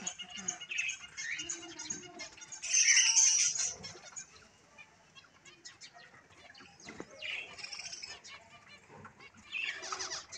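Quail chicks moving about in a plastic tub of grain: scattered light ticks and rustles, with a louder brief flurry about three seconds in and a few short chirps.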